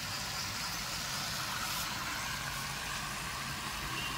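Steady rain falling on a rooftop terrace, an even wash of noise.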